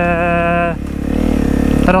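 Honda CRF250 supermoto's single-cylinder engine running on the move through its Yoshimura exhaust, with a man's voice holding one long sound over it at first. After about a second the engine note edges upward as the bike pulls in second gear.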